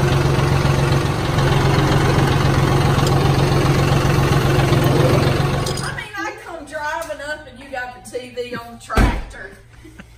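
John Deere loader tractor's diesel engine idling steadily with a low hum, ending abruptly about six seconds in. After it, voices talking and one loud thump near the end.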